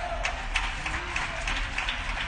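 Congregation clapping: a dense, irregular patter of many handclaps.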